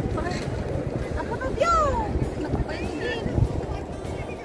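Wind rumbling on the microphone throughout, with a few short, sing-song calls from women's voices over it.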